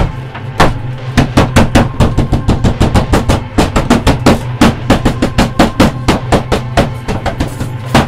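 Film score music for a horror scene: rapid, uneven percussion hits over a steady low drone.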